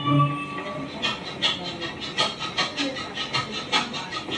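Instrumental interlude of a karaoke backing track. A held organ chord fades out in the first half-second, then a light percussion rhythm of quick, even hits follows, about four or five a second, with no voice over it.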